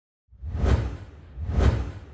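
Two whoosh sound effects for an animated logo reveal, each with a deep low rumble, swelling and fading. The first peaks just under a second in and the second about a second later.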